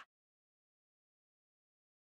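Complete silence: the sound cuts off dead at the start and nothing follows.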